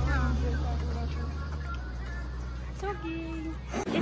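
Indistinct young women's voices over a steady low rumble. The rumble weakens about halfway through and stops suddenly near the end.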